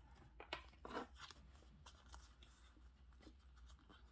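Faint handling of a deck of paper fortune-telling cards: a few soft taps and rustles, mostly in the first second or so, as the cards are picked up and fanned out by hand.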